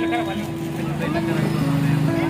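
Voices of several people talking at once, over a few long, steady held tones.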